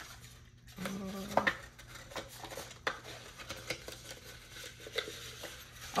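Scattered light clicks, taps and rustles of paper money, sheets and small objects being handled on a desk, with a brief spoken "uh" about a second in.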